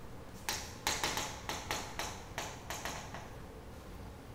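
Chalk tapping and scraping on a chalkboard as an equation is written: about a dozen quick, irregular taps over two and a half seconds.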